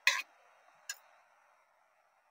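Two faint, short clicks about a second apart, a steel ladle knocking against a steel kadai while stirring thick spinach gravy, over a faint steady hiss.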